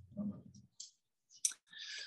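A short pause in a man's speech: two soft clicks, then a quick breath drawn in near the end, before he starts talking.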